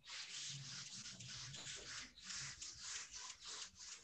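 Faint, rough scrubbing of a paintbrush against watercolour paper: a run of short, irregular strokes as dark paint is worked into the tree line.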